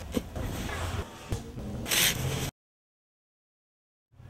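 Shovel digging into soil: a few blade strikes and scrapes, the loudest a short scrape about two seconds in. The sound cuts off to silence about halfway through.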